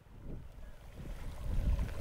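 Wind buffeting an outdoor microphone: an uneven low rumble that grows louder over the first second and a half.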